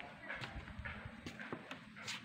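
Footsteps on a hard walkway, about two steps a second, each a short sharp tap.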